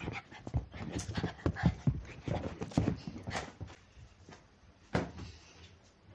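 A small dog panting in quick, irregular breaths that fade out after about three seconds, followed by a single sharp click near the end.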